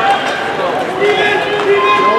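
Hockey players' voices calling out across the rink, over the scraping of skates on the ice.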